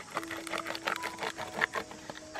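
A quick run of irregular clicks and crackles from a plastic bottle being handled at its cap, over soft background music with held notes.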